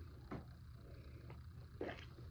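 Quiet room with a low steady hum, and faint small mouth sounds of a sip of neat rye whiskey being taken from a glass, with a second soft sound near the end.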